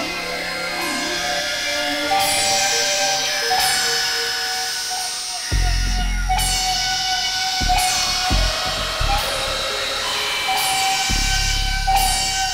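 Experimental electronic synthesizer music: steady held drone tones with a hissy, noisy top end. Deep bass hits come in sharply about five and a half seconds in, pulse a few times, and return near the end.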